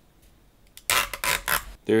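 Thin protective plastic film being peeled off the front panel of a mini PC: a short crinkling rustle lasting about a second, starting about a second in.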